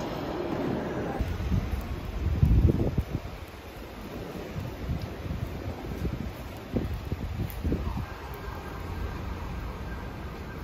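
Wind buffeting the microphone in gusts, loudest a couple of seconds in and again near the end, over a steady background of outdoor street noise.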